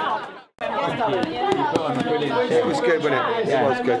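People's voices chatting together, cut off sharply for a moment about half a second in, then chatter resuming in a room.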